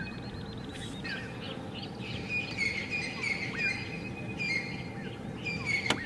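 Wild birds calling in the bush, a run of short repeated chirps and a few quick upward-sweeping whistles, with a fast trill at the start, over a steady low background hum.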